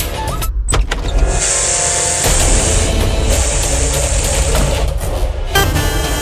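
Dramatic TV serial background score with a heavy low end, broken by a brief near-silent gap under a second in. Two long high hissing sound effects, each about a second and a half, are layered over the music in the middle.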